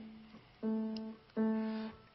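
The same note struck twice on a fortepiano, each strike ringing for about half a second before it is stopped, with a fainter sounding of that note at the very start.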